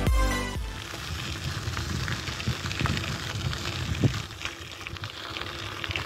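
Electronic intro music with a beat stops about half a second in, then a steady hiss of outdoor noise with scattered small clicks and a single thump about four seconds in.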